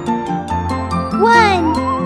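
Children's cartoon background music with a steady beat and light chiming notes. About a second in, a cartoon sound effect sweeps up and then down in pitch, followed near the end by a wobbling whistle that rises.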